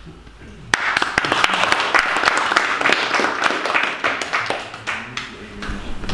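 Audience applauding, starting suddenly under a second in and thinning out toward the end.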